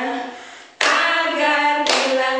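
Voices singing a children's action song, fading briefly and then coming back sharply about a second in. Hand claps fall about a second in and again near the end.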